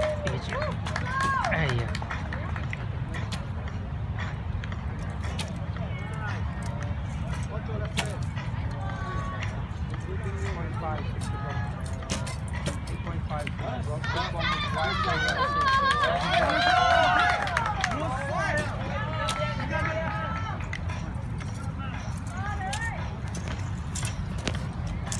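Outdoor ambience of a steady low rumble with several people's voices talking, loudest and most crowded about halfway through, and scattered sharp clicks.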